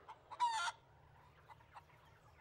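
A cartoon chicken giving one short cluck about half a second in.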